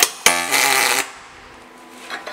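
MIG welder arc laying a single tack weld on a T-joint: a sharp click as the arc strikes, then a loud crackling buzz that cuts off about a second in.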